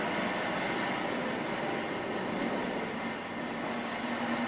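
Steady background hiss and hum of a room, even throughout with no distinct events.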